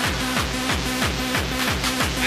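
Fast rave techno playing in a DJ mix, with a kick drum on every beat at about three beats a second and synth parts over it.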